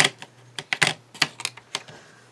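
Small plastic ink pad cases being handled: a run of sharp, irregular clicks and clacks as a hinged case is opened and the pads are knocked down on a cutting mat.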